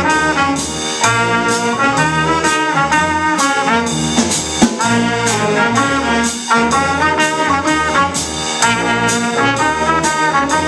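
Student jazz band playing: wind instruments holding and moving chords over a bass line that steps along in low notes. A drum kit keeps time with steady strikes about twice a second.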